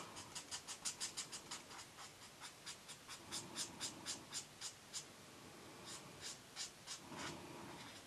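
Faint scratching of a felt-tip marker on paper in quick, short colouring strokes, about four a second, with a brief pause about five seconds in before a few more strokes.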